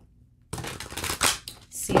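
A deck of tarot cards being shuffled by hand: a quick run of card flicks lasting about a second, starting about half a second in.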